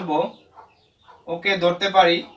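A man's voice speaking in two short stretches, with about a second of near silence between them.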